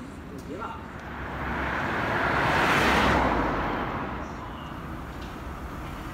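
A car passing by on a city street: the road noise swells for about two seconds, peaks about three seconds in, then fades away over the steady hum of traffic.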